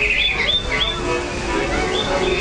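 Recorded diorama soundtrack: a quick trill followed by short, evenly repeated bird-like chirps high up, over a few held musical notes. The train's low rumble runs underneath.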